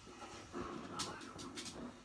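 Black Labrador and her puppy play fighting: a dog vocalising, with a few sharp clicks about a second in.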